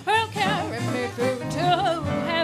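Jazz music: a voice sings wordless phrases that slide and bend between notes over band accompaniment.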